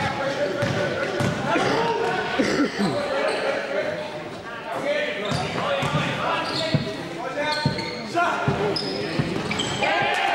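A basketball bouncing on a gym floor at irregular intervals during live play, under indistinct shouts and calls from players and spectators, echoing in a large sports hall.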